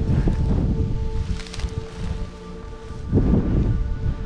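Background music of held, steady notes over wind buffeting the microphone; the wind eases mid-way and comes back strongly about three seconds in. A brief rustle about a second and a half in.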